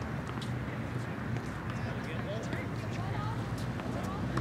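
Outdoor tennis court ambience: a steady low hum with faint, indistinct voices and a few short, sharp taps.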